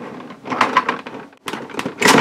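Hasbro Disney Frozen Little Kingdom Elsa's Magical Rising Castle, a plastic playset, creaking and clicking as its top is pressed down to fold it closed, with a few sharp clicks near the end.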